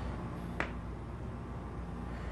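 A single sharp click about half a second in, over a steady low hum.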